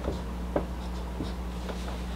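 Quiet room tone: a steady low hum with a few faint clicks scattered through it.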